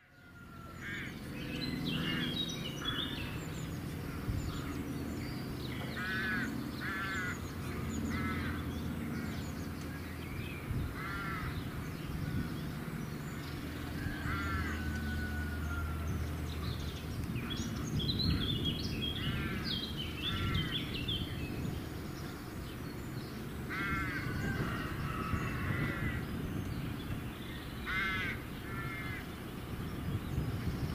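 Large birds giving short series of harsh, repeated calls, with small songbirds chirping between them, over a low steady rumble.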